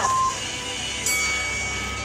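Interval timer beeping the end of a 20-second Tabata work interval: the last short countdown beep, then about a second later a longer, higher beep that holds for about a second.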